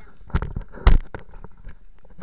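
Lake water splashing and sloshing against the camera as it is dipped to the surface, with knocks on the camera body; two loud thumps, about a third of a second in and about a second in, the second the loudest.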